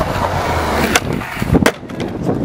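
Skateboard wheels rolling on concrete. About a second and a half in come a few sharp clacks as the board hits the ground and the skater falls.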